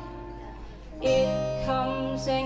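Live acoustic ballad on acoustic guitar and digital piano. The sound dips into a short lull, then a new strummed chord comes in about a second in.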